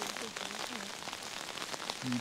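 Chicken pieces sizzling in a pot on a camping gas stove: a steady crackling hiss of fine pops.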